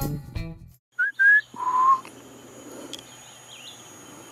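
Background music ends within the first second. Then come three clear whistled notes: two short rising ones and a longer, lower one. Behind them is a faint steady high-pitched tone.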